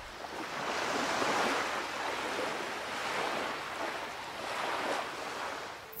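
Sea waves washing in, a surf sound effect that swells and eases in slow surges.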